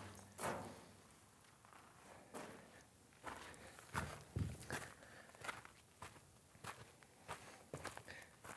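Faint footsteps on dry dirt and gravel, an uneven step about every half second to second.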